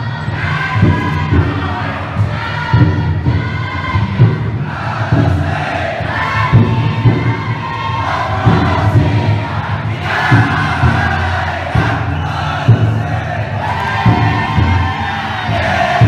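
Futon daiko bearers chanting loudly in unison in long drawn-out phrases, with the float's taiko drum beating steadily underneath and the crowd around.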